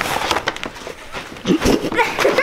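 Crinkling and rustling of a plastic wrapper and tissue paper as a gift is pulled out of a paper gift bag, with a short voice exclamation near the end.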